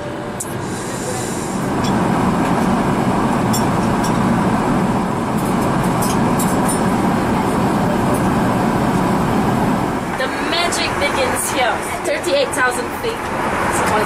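Steady in-flight cabin noise of an Airbus A380 airliner: an even rushing noise with no tone in it, a little louder from about two seconds in. A voice starts talking near the end.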